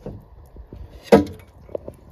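Water dripping and trickling into an Ideal Logic boiler's condensate sump, which is filling up because the condensate trap has blocked; scattered light clicks and taps throughout, and a short spoken 'oh' about a second in.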